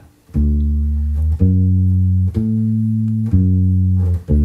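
Fender Precision Bass electric bass playing a D major triad arpeggio (root D, major third F-sharp, fifth A). Four sustained notes, each starting about a second after the last.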